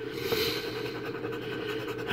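A coin scraping the coating off a scratch-off lottery ticket in continuous short strokes.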